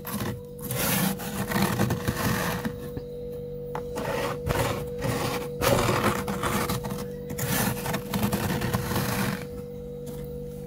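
Fingers scraping and crunching into thick, soft freezer frost in irregular bursts of scratchy noise, over a steady hum.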